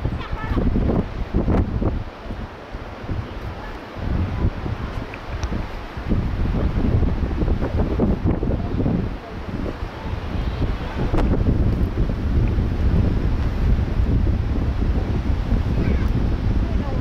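Wind buffeting the camera's microphone in gusts, a heavy low rumble that eases briefly a couple of times.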